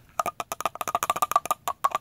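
Fingernails tapping quickly on a silver body spray bottle: a fast, uneven run of about a dozen taps a second, each with a short ringing note.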